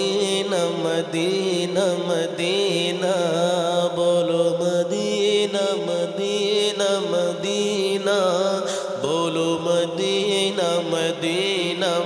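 A man singing a devotional Urdu naat in praise of Madina, in long ornamented phrases with a wavering, melismatic melody over a steady sustained drone.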